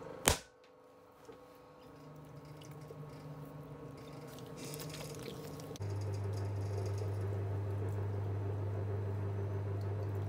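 A lump of clay slapped down onto a wooden bat on a pottery wheel, one sharp thud just after the start. From about six seconds in, the electric wheel motor hums steadily while wet clay squishes under the hands being centred and coned.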